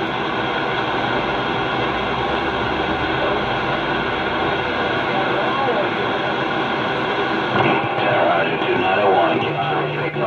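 CB radio speaker receiving a distant skip station on channel 28: a voice buried in steady static and hiss. The speech comes through a little louder and clearer near the end.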